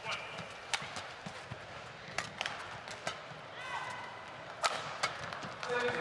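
Badminton rally in a large arena: rackets striking the shuttlecock with sharp cracks at irregular intervals, roughly every half-second to a second, with a couple of court-shoe squeaks midway and arena crowd noise underneath.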